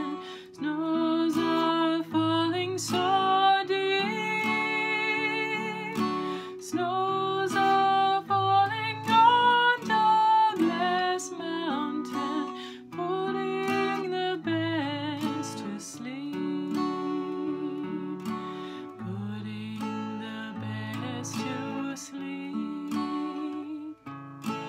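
Acoustic guitar strummed and picked in a slow, gentle folk song, with a woman's singing voice in places.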